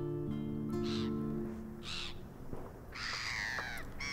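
Soft background music with sustained notes that fade out early, under gulls calling over the shore: short cries about one and two seconds in, then a falling, drawn-out cry near the end.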